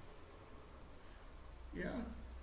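Quiet room tone with a steady low hum, then a single spoken "yeah" near the end.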